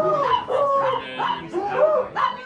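A dog whining and yipping: several short high cries that bend up and down in pitch, one after another.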